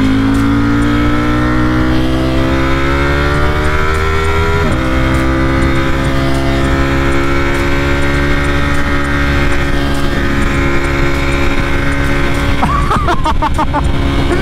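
Sport motorcycle engine pulling with its pitch rising steadily, then dropping abruptly about five seconds in as it shifts up a gear, after which it runs on at a nearly steady pitch. Wind rushes over the microphone.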